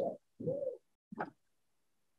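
A man's short hummed "mm" with a pitch that rises and falls, and a brief second vocal sound about a second in. The rest is silent.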